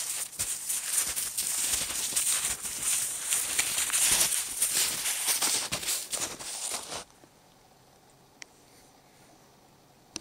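Snowshoe footsteps crunching through snow close to the microphone, a rapid run of crunches that stops abruptly about seven seconds in.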